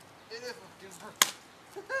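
A wooden stick striking a tree trunk: one sharp crack about a second in.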